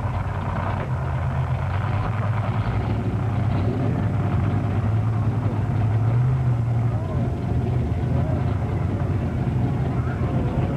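A motor vehicle engine running steadily in a low drone, swelling a little about six seconds in, with people talking over it.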